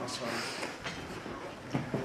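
Room noise of a group of people moving about, with faint voices in the background and a short knock near the end.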